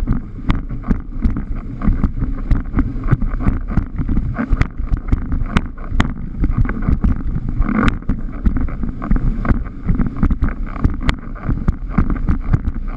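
Wind buffeting a rig-mounted action camera's microphone, with frequent sharp knocks and slaps from the windsurf board and rig working over chop at speed.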